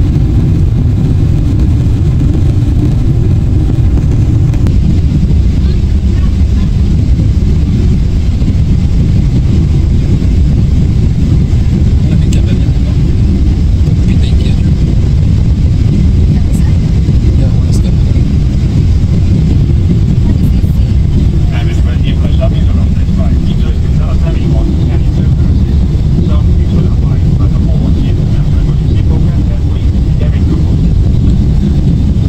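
Airliner cabin noise during the climb after takeoff: the loud, steady low rumble of the jet engines and rushing air, heard from a window seat inside the cabin.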